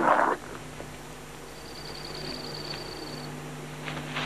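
Coyote pups play-fighting: a short, loud, rough burst of growling at the start, then a faint, steady, low rumbling growl.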